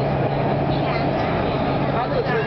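Steady running noise of a Canada Line SkyTrain car heard from inside the cabin as it travels through a tunnel: an even rumble with a constant low hum. Voices talk over it.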